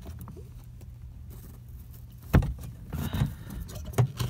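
A worn-out factory car speaker being worked loose and lifted out of its rear-deck opening: a sharp knock a little past two seconds in, then its metal frame scraping and rustling against the deck, with another click near the end. A low steady hum lies underneath.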